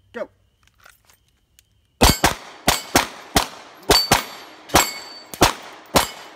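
Two pistols, a Glock 19 and a Beretta, fired rapidly in a side-by-side race on a rack of steel plates: about ten shots in four seconds, beginning about two seconds in. Some hits leave the steel plates ringing with a high tone.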